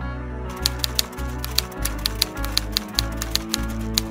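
Typewriter keys clacking in a quick run, a few strikes a second, starting about half a second in. Background music with a pulsing bass plays underneath.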